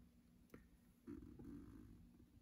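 Near silence: room tone, with one faint click about half a second in and a brief faint low sound in the second half.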